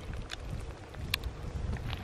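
Wind buffeting the microphone as a low, steady rumble, with a couple of faint clicks.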